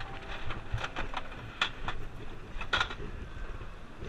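Gashapon capsule-toy machine being worked by hand: its knob is turned and the plastic capsule drops out, giving a handful of separate sharp plastic clicks and knocks over a steady low background hum.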